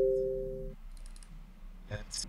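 A ringing tone of two steady pitches, fading, that stops abruptly under a second in, followed by a few faint clicks.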